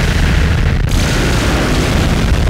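Loud, dense screamo/math-rock band recording: heavily distorted guitars and drums filling every pitch range with a heavy low end, with a momentary break in the treble just under a second in.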